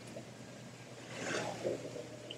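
Faint, steady outdoor background noise, with a brief rush of hiss that swells and fades a little past the middle.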